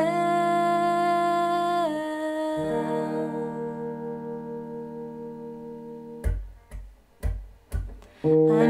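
Electric guitar played with a single down strum per bar, with a woman singing a long held note over the ringing chord for the first two seconds. A new chord is struck about two and a half seconds in and left to ring and fade. Near the end come four short, sharp strikes.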